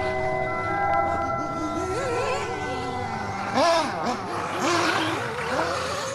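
Small nitro engine of a 1/8-scale RC buggy, its pitch rising and falling over and over as the throttle is worked around the track. It comes in over music whose sustained chime-like tones fade out in the first couple of seconds.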